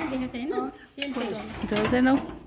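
Rusty corrugated iron sheet, used as a lid on a concrete well, scraping and rattling against the concrete rim as it is lifted and moved by hand.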